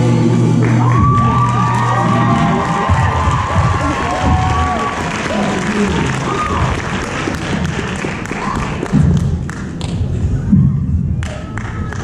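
A song with guitar ends on a held chord about two seconds in. An audience then applauds and cheers with whoops, dying down over the next several seconds.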